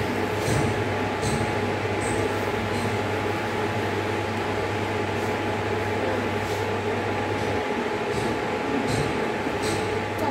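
Steady hum and fan noise from an induction cooktop heating a steel saucepan of simmering milk and barfi. A wooden spatula scrapes the pan now and then as the milk is stirred. The low hum cuts out about three-quarters of the way through.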